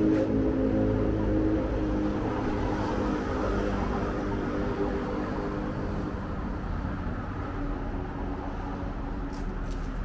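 Steady outdoor street ambience with a low rumble of traffic. Faint background music fades out over the first few seconds.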